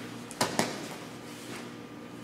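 Two sharp slaps of bodies landing on a vinyl-covered grappling mat, a fraction of a second apart, during a shoulder roll over a partner.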